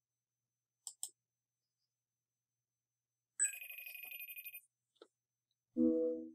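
A short electronic telephone-style ring with a rapid warble, lasting just over a second, about halfway through. It comes after two faint clicks, and near the end a short held musical tone begins as the video starts.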